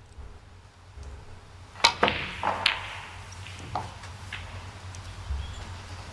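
Snooker balls clicking: the tip strikes the cue ball and balls knock against each other, several sharp clicks spread over about three seconds, starting nearly two seconds in, from a televised match.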